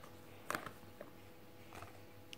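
A few light knocks as mushroom pieces drop into a bowl sitting on a digital kitchen scale. The loudest comes about half a second in and smaller ones follow near one second and near the end, over a faint steady hum.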